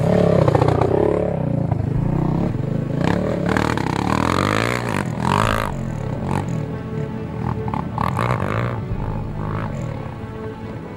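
Background music over a sport ATV's engine revving up and down as it rides a dirt trail.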